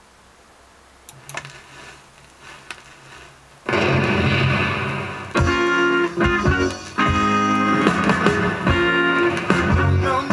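Reggae single playing from a 7-inch vinyl record: a faint steady hiss, then a quiet instrumental start about a second in, with the full band coming in loud just before four seconds in. This is the instrumental intro, with no singing yet.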